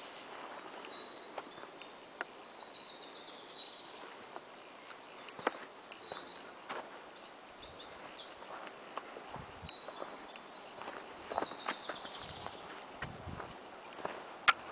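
Small birds singing quick runs of high, chattering notes: a long bout through the first half and a shorter one later. Underneath is a soft outdoor hiss with scattered light clicks.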